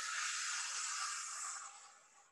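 A woman taking one long, deep breath during a breathing exercise: an even hiss that fades out near the end.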